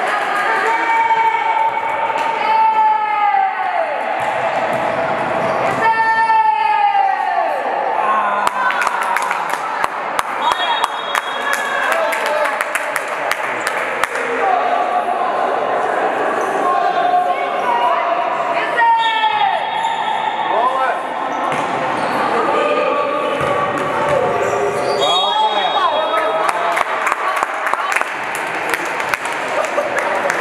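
Basketball being dribbled and bouncing on the court floor, a series of sharp knocks, amid players and spectators calling out during play.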